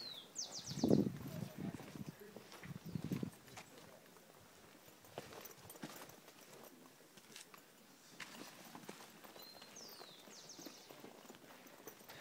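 Quiet voices of people talking in the first few seconds, with a bird singing a short phrase twice, about nine seconds apart: a whistled note, a falling note, then a quick run of high notes. Faint scattered clicks in between.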